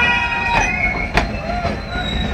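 Passenger train rolling slowly past, its wheels squealing in a long high note for about the first second, with two sharp metallic clanks about half a second and a second in.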